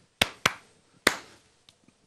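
A man claps his hands three times: two quick claps, then a third about half a second later.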